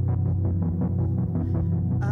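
Live band playing an instrumental passage: acoustic guitar picking a quick, even pattern over sustained low notes.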